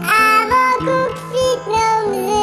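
A pop song sung in high-pitched, sped-up 'chipmunk' voices over a backing track. The voice slides up into a note at the start, then sings a few short held notes.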